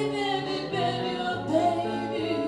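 Live acoustic band music: two acoustic guitars and a trombone playing a slow pop ballad, with a sustained, gliding melody line over the guitars.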